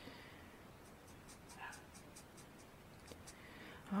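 Faint scratching of a Spectrum Noir alcohol marker's tip stroking across cardstock as it colours in a stamped image, a string of short, light strokes.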